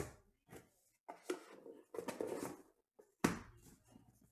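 A stack of trading cards being handled on a table: two light taps, then rustling as the cards are slid and squared, and a sharp knock a little after three seconds as the stack is set down.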